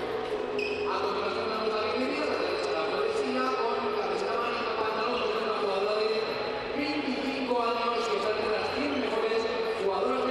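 Tennis ball struck by rackets in a baseline rally, a sharp hit every second or two, under a commentator's voice.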